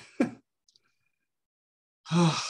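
A man clearing his throat once, briefly.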